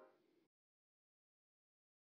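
Near silence: the last faint tail of fading background music right at the start, then dead silence.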